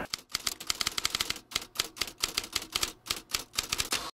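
Typewriter keys clacking in quick, irregular keystrokes, in short runs with brief pauses between them: a typing sound effect. It stops near the end.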